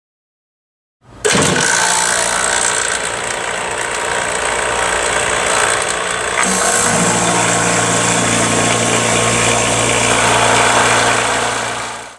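Yellow Jacket HVAC vacuum pump running with a steady motor drone, starting about a second in. About halfway through there is a short hiss as the pump's intake valve is opened, after which its low note grows stronger.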